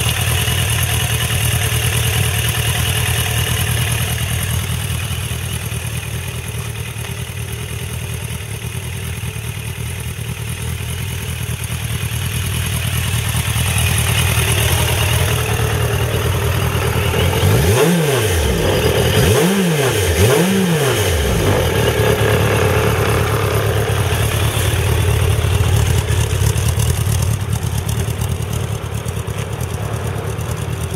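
Suzuki Bandit 1200S's oil-cooled inline-four engine idling steadily, with three quick throttle blips a little past halfway, each rev rising and falling back to idle.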